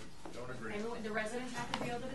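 Quiet speech picked up from a distance, with one short sharp click near the end.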